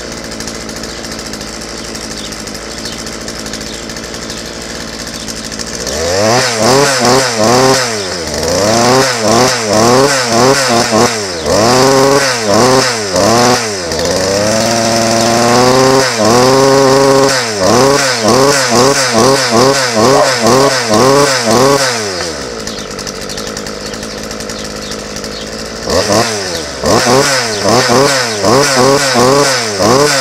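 Rebuilt Partner P4-20-XT two-stroke chainsaw engine, running with no clutch, bar or chain fitted, idling steadily for the first few seconds, then revved up and down in quick repeated blips with one longer hold at high revs midway. It drops back to idle for a few seconds, then is blipped again near the end.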